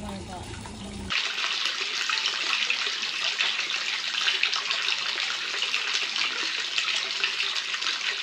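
Water running steadily into a stone foot bath, a continuous splashing that starts abruptly about a second in.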